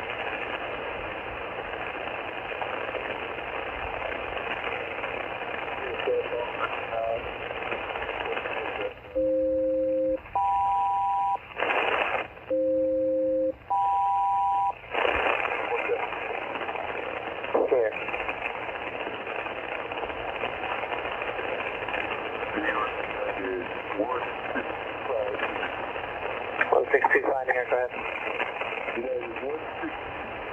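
Static and hiss from an HF single-sideband aircraft channel, received on a handheld scanner. From about nine seconds in, a SELCAL selective-calling signal plays twice: each time a two-tone chord held about a second, then a higher two-tone chord, as a ground station calls the crew of one particular aircraft.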